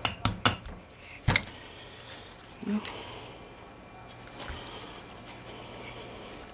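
Hammer striking a nail used as a punch: four sharp metal taps within the first second and a half, the last the loudest. They are an attempt to drive out a badly corroded, stuck pin on an outboard motor part.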